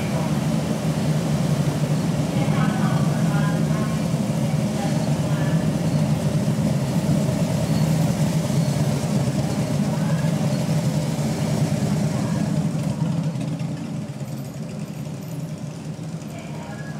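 Police motorcycle engines running at low speed as the escort rolls slowly by, a steady low engine drone that fades over the last few seconds.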